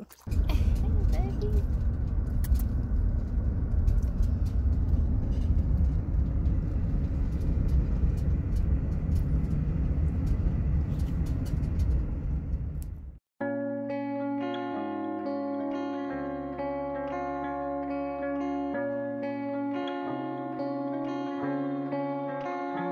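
A van driving, heard inside the cab: a steady low rumble of engine and road noise with a few faint clicks. About thirteen seconds in it cuts off abruptly and background music with sustained, guitar-like notes takes over.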